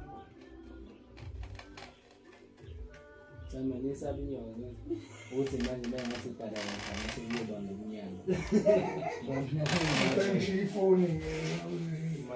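Faint clicks and scratches of a knife working at plastic roof lining, then people's voices talking over it for most of the rest, with a short rasping noise about ten seconds in.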